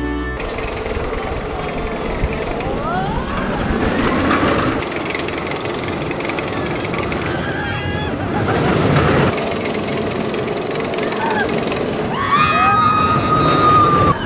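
Zierer ESC steel roller coaster train running along its track, a steady rumbling rush of wheels on steel. Riders' voices rise over it in shouts and screams, with a long high scream near the end.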